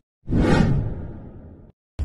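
An intro transition whoosh sound effect: one swell that comes in a quarter second after a brief silence, then fades away over about a second and a half before cutting off.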